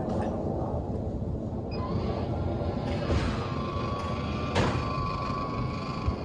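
Van roof vent fan's motorised lid opening: a thin, steady motor whine starts about two seconds in and runs on past the end, with a sharp click partway through, over a steady low rumble.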